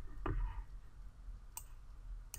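Faint computer mouse clicks: a soft one shortly after the start and a sharper one past the middle.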